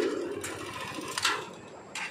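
Small motorcycle engine idling with a fast, even mechanical chatter, and a few short clicks over it.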